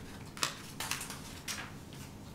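Light handling sounds on a tabletop: soft rustling and a few small taps as a quilt layout mat and sewn fabric pieces are moved and set aside, with the sharpest tap about half a second in.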